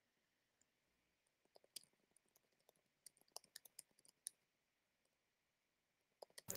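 Near silence, broken by a handful of faint, sharp clicks scattered through the middle few seconds.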